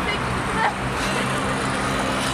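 Road traffic noise with a steady low engine hum from a motor vehicle running nearby.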